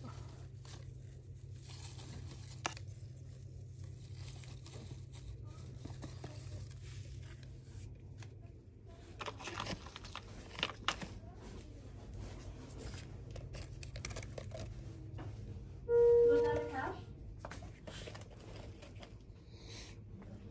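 Store ambience: a steady low hum with scattered clicks and crinkling of plastic-wrapped merchandise, and a short, loud pitched sound lasting about a second, near the end.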